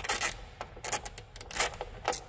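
Hand ratchet with a Torx 40 bit clicking in short irregular runs as it backs a bolt out of a vehicle door.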